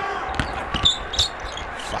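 A basketball bouncing on a hardwood court, several separate bounces.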